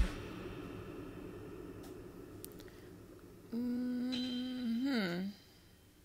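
A woman humming a long, thoughtful closed-mouth 'hmmm' that starts about three and a half seconds in, holds one steady note, then wavers and dips in pitch before stopping. Before it there is only a faint fading low sound after the music cuts off.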